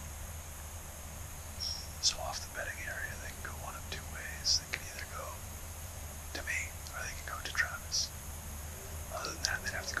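A man whispering close to the microphone, in short phrases with sharp hissing consonants, over a steady low hum.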